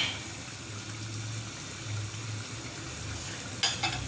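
Mutton curry sizzling in an aluminium pot on a gas burner, a steady hiss, with a ladle stirring it at the start and a brief clatter near the end.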